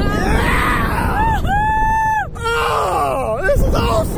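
Riders on a slingshot ride screaming and yelling in flight, with pitch swooping up and down and one long held scream about a second and a half in, over wind rushing on the microphone.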